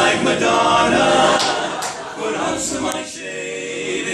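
Male barbershop quartet singing a cappella in four-part close harmony, dropping quieter about two seconds in.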